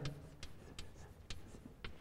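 Chalk writing on a blackboard: a series of short, faint taps and scratches as the letters are drawn.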